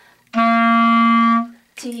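A clarinet plays the warm-up note C. It is one steady, held note of about a second that starts a third of a second in and stops cleanly. A spoken syllable follows near the end.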